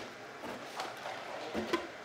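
A few light knocks of small plastic containers being set down into a cardboard box, one near the start, one about a second in and one near the end.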